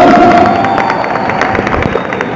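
Audience clapping, many sharp claps a second, with a held shout that fades about three-quarters of the way through.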